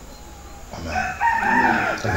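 A rooster crowing once, starting about a second in: a single drawn-out call that falls in pitch at its end.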